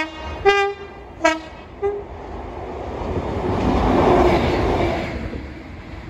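Class 97/3 diesel locomotive 97302 (a rebuilt Class 37 with an English Electric V12) sounding its two-tone horn in short toots alternating high and low, the last one faint. The locomotive then passes, its engine and wheels swelling to a peak about four seconds in and fading away.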